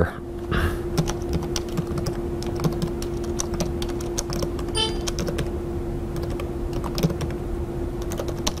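Typing on a computer keyboard: a run of irregular key clicks as shell commands are entered, over a steady low hum.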